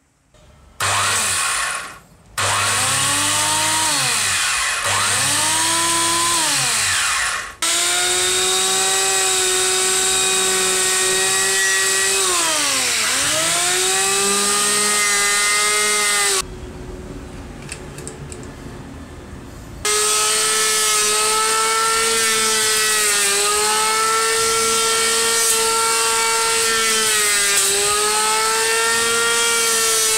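Restored vintage Hitachi electric hand planer's motor whining. It is switched on in two short bursts that rise and fall in pitch, then runs steadily, its pitch dropping each time the cutter bites into the wood. The whine drops away for about three seconds midway, then picks up again.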